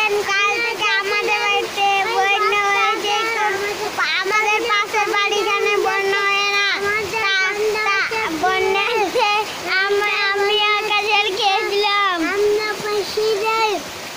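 A high-pitched voice singing in long held notes over the steady hiss of heavy rain falling on a courtyard.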